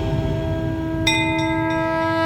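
Bell-like tones in the instrumental opening of a devotional song: a struck tone rings on steadily, and a second, higher bell is struck about a second in.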